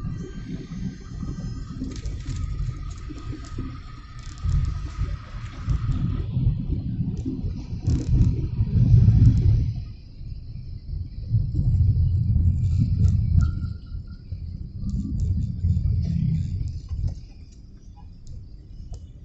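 Low rumble of a car's road and engine noise heard from inside the cabin while driving in traffic, swelling and easing several times.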